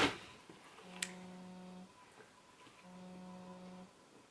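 Mobile phone vibrating with an incoming call: two steady one-second buzzes a second apart, with a short click at the start of the first.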